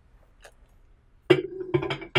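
A black swing-out bucket being set into the rotor of an RC-3B Plus centrifuge: one faint click, then, about two-thirds of the way through, a quick run of hollow clunks and knocks with a short ringing hum as the bucket seats onto its mounts.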